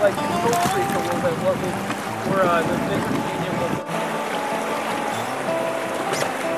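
Rushing whitewater with people's voices calling out, over music. About four seconds in there is a sudden cut, after which the music's held notes carry on over the river sound.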